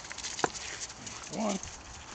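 Footsteps crunching in fresh snow, with one sharp click about half a second in.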